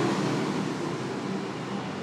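Steady background noise with a faint low hum.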